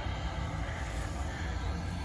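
Steady low rumble and hiss of outdoor background noise, with no distinct events.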